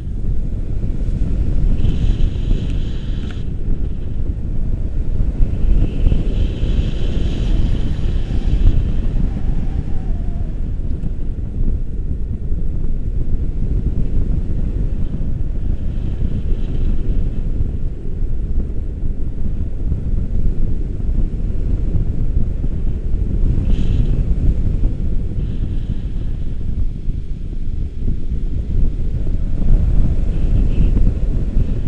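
Wind rushing over the camera microphone during a tandem paragliding flight: loud, steady low buffeting, with a few brief surges of higher hiss.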